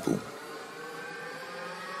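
A steady sustained synth drone in a melodic techno DJ mix, with no beat, held under the pause after a spoken-word vocal line that ends at the very start.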